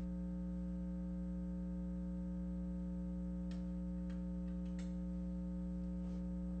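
Steady electrical hum made of several fixed tones, unchanging throughout, with a few faint clicks about halfway through.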